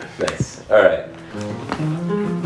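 A short stretch of voices, then a few acoustic guitar notes ringing and held, played between songs.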